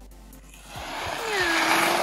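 Skis scraping and skidding across packed snow, a rushing scrape that builds to its loudest near the end as a skier catches his skis and goes down, with one drawn-out vocal cry over it.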